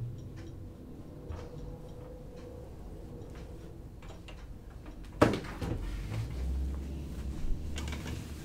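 Quiet room with faint scattered clicks, then one sharp knock about five seconds in, followed by a low hum.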